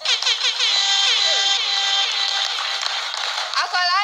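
Studio audience cheering and screaming, many voices at once, starting suddenly as the song stops and continuing loudly, with one louder shout near the end.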